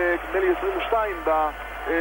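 Speech only: a TV commentator talking over the game broadcast, in band-limited broadcast audio.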